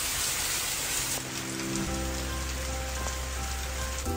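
Steady rain falling, a continuous hiss of drops. Soft background music comes in about a second in, with a bass line joining shortly after.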